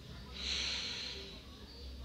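A man breathing out near the microphone: one soft exhale lasting about a second, over a faint steady low hum.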